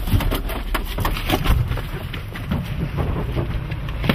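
Handling noise from a jostled handheld or body-worn camera: a low rumble with many small knocks and rustles, as the camera is carried out of a vehicle at a run.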